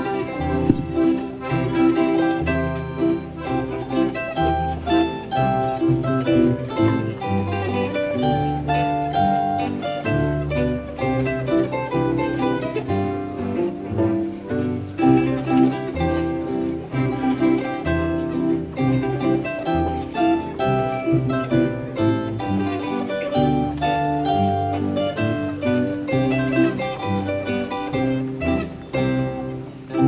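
Austrian folk string ensemble (zither, guitar, double bass and accordion) playing a brisk polka, the double bass keeping a steady on-the-beat pulse under the plucked melody.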